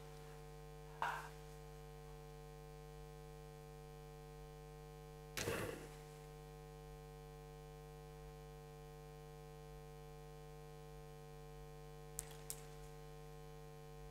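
Steady electrical mains hum on the sound system, with a few brief faint sounds about a second in, around the middle, and near the end.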